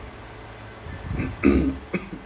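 A man clearing his throat behind his hand, in a few short rough bursts starting about a second in.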